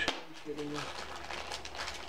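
Packaging crinkling and rustling in quick irregular crackles as a small earplug packet is handled and opened. A short hummed voice sound comes about half a second in.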